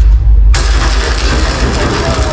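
Sound-effect soundtrack of a projection light show played over loudspeakers: a deep low drone, then about half a second in a sudden loud burst of noise that carries on as a heavy, bass-laden wash.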